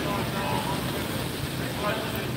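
Steady noise of traffic and tyres on a rain-wet city avenue, with faint, indistinct voices over it.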